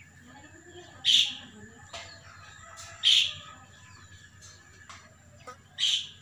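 A bird calling outdoors: a short call repeated three times, about every two seconds, over a faint steady high tone.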